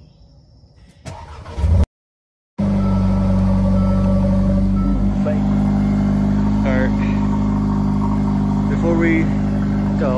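Mercedes-AMG engine cold start: a short burst of cranking about a second in, a brief silence, then the engine catches and settles into a loud, steady idle.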